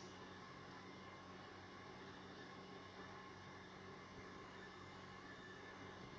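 Near silence: a faint steady hum and hiss of room tone.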